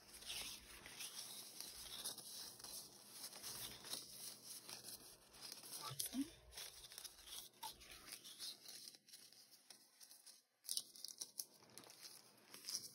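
Faint rustling and shuffling of paper and cardstock sheets being handled and leafed through, with irregular crinkles and light scrapes.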